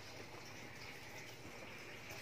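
Faint, steady room noise with no distinct events.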